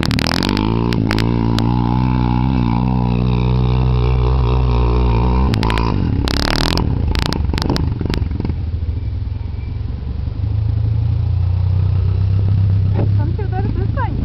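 Quad bike (ATV) engine revving hard and unevenly as it climbs a steep sandy hill with its wheels spinning. Around six seconds in there is a short rush of noise and knocks, after which the engine runs lower and steadier.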